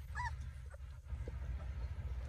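A Cane Corso puppy gives one brief high whimper about a quarter of a second in, over a steady low rumble.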